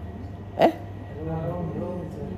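Speech: a man's short exclamation "Eh?" about half a second in, followed by quieter talk, over a steady low hum.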